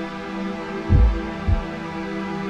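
Slow background music of sustained held tones, with a low double thump like a heartbeat about a second in.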